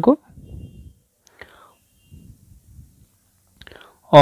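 A quiet pause after a spoken word, holding only faint breaths and small mouth sounds, with a slight rustle just before speech resumes.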